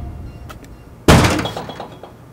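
A sudden heavy crash-like impact hit about a second in, with a rattling, ringing tail that dies away over most of a second: a trailer sound-design hit marking a cut.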